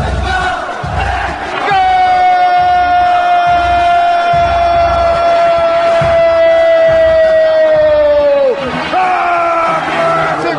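A Brazilian radio football commentator's long drawn-out goal cry, "gooool". It is one high note held for about seven seconds, falling slightly in pitch before it breaks off near the end. A steady low beat runs underneath.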